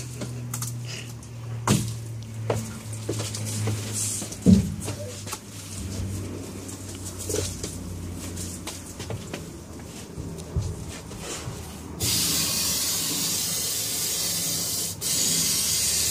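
Aerosol spray adhesive hissing from the can in a long spray that starts suddenly about three-quarters of the way in, with a brief break near the end. Before it come scattered knocks and thumps of plywood and foam insulation board being handled.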